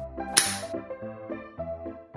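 Background music with a steady tune. About half a second in, a brief sharp snap as the clear acrylic practice padlock's spring-loaded shackle pops open once the picked cylinder turns.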